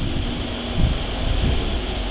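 A low, steady rumble with an even hiss over it.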